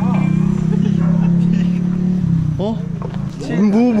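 A steady low motor-like hum, then from about two and a half seconds in a man calls 'moo, moo' (Thai for 'pig') over and over in a wavering sing-song, calling a pig.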